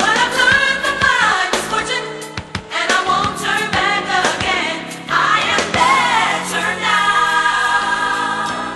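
Gospel mass choir singing with instrumental accompaniment and regular percussive hits.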